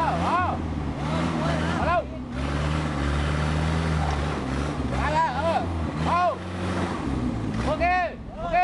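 Suzuki 4x4's engine running at low revs with small changes in pitch as the truck crawls slowly down a deep dirt rut.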